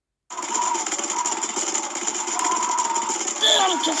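A loud, steady rattling, engine-like noise that starts abruptly after a brief silence. Near the end, a high-pitched cartoon voice shouts an exclamation.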